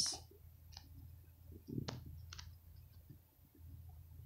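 A few faint, short clicks close to the microphone, over a low background hum.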